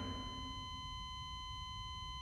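Faint, steady high-pitched electronic tone from a hospital patient monitor: the continuous flatline tone, sounding because the monitor picks up no heartbeat.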